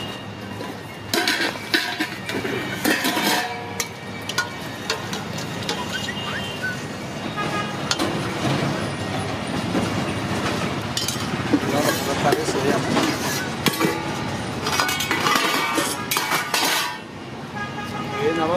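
Stainless steel ladles and serving spoons clinking against steel pots, lids and plates as food is dished out, over background chatter.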